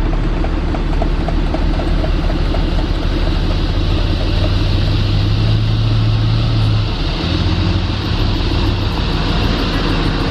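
Toyota Land Cruiser 4x4's engine running steadily as the vehicle drives slowly over a soft sand track and pulls up close. Its low note swells slightly, then eases about seven seconds in as the throttle comes off.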